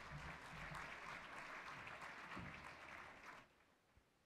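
Audience applauding, then stopping abruptly about three and a half seconds in.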